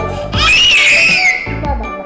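Background music with a steady beat, and a small child's long high-pitched squeal from about half a second in until about one and a half seconds.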